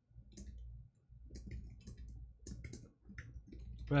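Typing on a computer keyboard: quick, irregular key clicks in short runs, over a faint low hum.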